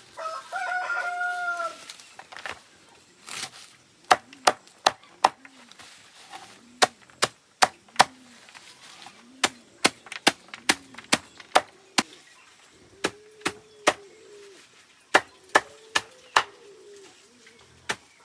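A rooster crows once at the start. From about four seconds in, a knife chops leafy greens in quick runs of sharp chops, a few a second, with short pauses between the runs.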